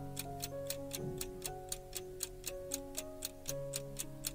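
Countdown-timer clock ticking at an even pace, about four ticks a second, over background music with held notes.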